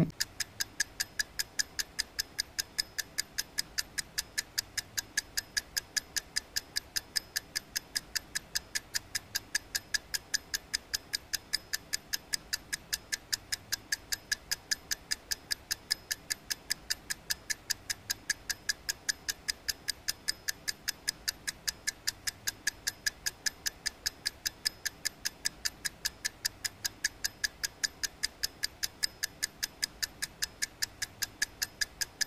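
Steady, fast mechanical ticking, like a clock, at about four even ticks a second with no change in pace or loudness.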